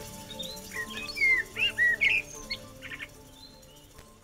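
A bird singing a quick run of chirps and whistles between about one and three seconds in, over the last sustained notes of the music fading out.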